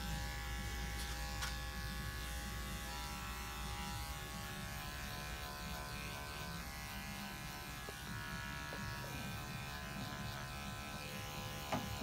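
Andis five-speed electric dog clipper running with a steady buzz as it shaves a matted coat down close to the skin.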